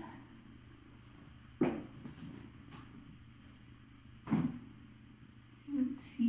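A cat purring low and steady, broken by two short, sudden sounds about two and a half seconds apart.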